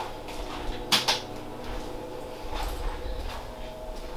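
Handling noises from gloved hands working in a clear plastic egg tub: a sharp double clack about a second in, with softer knocks after it, over a steady faint hum.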